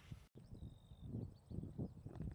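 Faint outdoor ambience: a few faint high bird chirps in the first second, with soft irregular low rumbles. The sound drops out completely for a moment just after the start.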